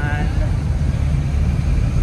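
Steady low rumble of road and engine noise inside a moving car.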